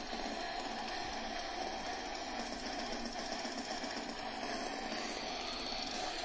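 Faint deathcore instrumental backing track, distorted guitars and fast drums forming a steady, rapid churn low in the mix.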